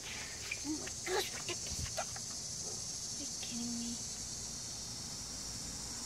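A steady, high-pitched chorus of chirping insects such as crickets, with a few faint clicks and rustles in the first couple of seconds.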